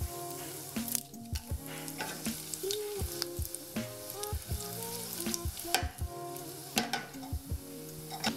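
Dried red chillies and panch phoron seeds sizzling in hot oil in a stainless steel pan, with a steady hiss and frequent sharp crackles from the oil. A soft background melody plays underneath.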